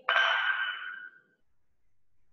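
A single metallic clink of dumbbells touching at the top of a chest press, ringing on and fading away over about a second and a half, heard over a video call.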